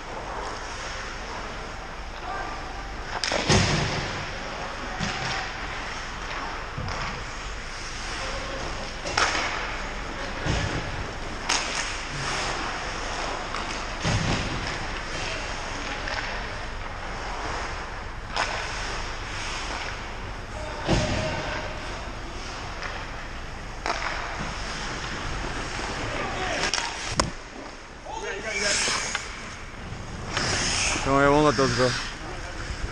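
Ice hockey play across a rink: a steady scrape of skates on the ice, with scattered sharp knocks of sticks and puck against the ice and boards, and faint players' voices.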